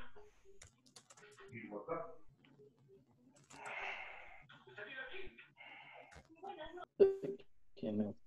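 Faint, broken-up voices coming through a video-call connection, with a short burst of noise about four seconds in; the audio is breaking up with too much interference.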